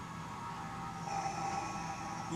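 Film soundtrack holding a quiet, steady drone of sustained tones, with a few higher tones coming in about a second in.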